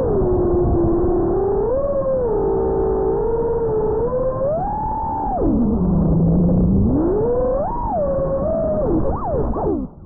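FPV quadcopter's motors whining, the pitch gliding up and down with the throttle: high about five seconds in, dropping low and holding there, then climbing again. Near the end the pitch swoops down and cuts out as the quad comes down onto the asphalt.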